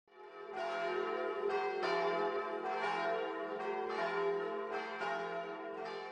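Church bells ringing, strike after strike at an uneven pace, each note ringing on over the last. The sound fades in at the start.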